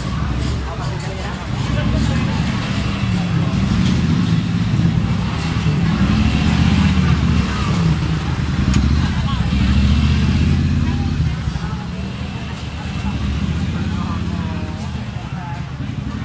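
Busy street hubbub: crowd chatter with car and motorcycle engines running close by in slow traffic, the low engine rumble loudest through the middle.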